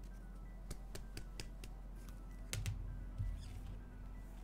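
Faint background music under a run of light clicks and taps from trading cards and clear plastic top loaders being handled on a table. The loudest is a clack with a soft thump a little past the middle.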